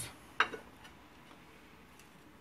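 A single sharp clink of kitchenware about half a second in, then quiet room tone.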